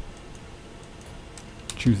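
A few faint, short clicks from a computer keyboard as a line-width value is typed, over a low steady room hiss.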